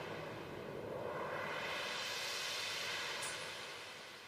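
A steady wash of hiss-like noise with no clear pitch. It holds at an even level and starts to fade near the end.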